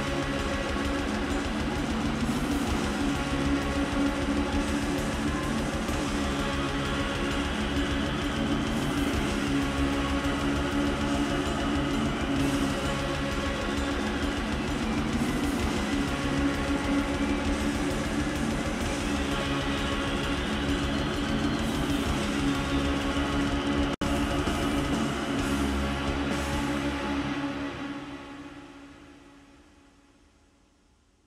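Black/doom metal recording playing: dense, rapid drumming under droning, synthesizer-like lines that bend and slide in pitch. It fades out near the end.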